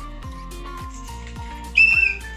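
Background music with a steady beat; near the end, one short, loud blast on a handheld whistle.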